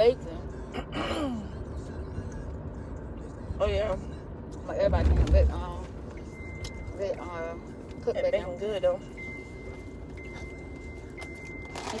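Brief muffled talking and vocal noises inside a car cabin over a steady low rumble. A thin, steady high tone comes in about halfway and runs on in broken stretches.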